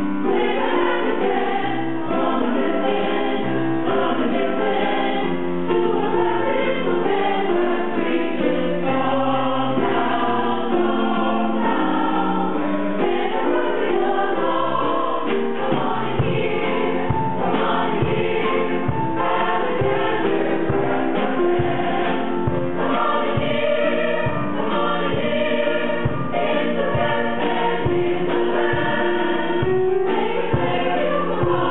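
Mixed choir of men and women singing a ragtime number. A steady low beat comes in about halfway and continues under the voices.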